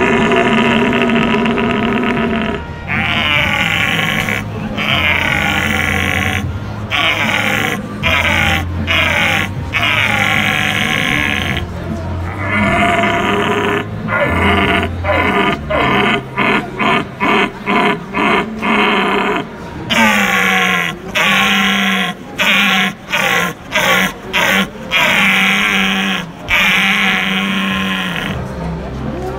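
A man imitating a red deer stag's rutting roar through a tubular deer call: long, loud roaring calls, a quick run of short grunts about halfway through, then more long roars. The call opens as the 'old, searching stag' looking for hinds.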